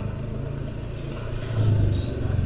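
Small motor scooter engine running at low speed, a steady low hum that grows louder near the end as an oncoming scooter draws close.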